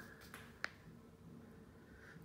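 A single sharp click about two-thirds of a second in, with a fainter tick just before it, over near-silent room tone.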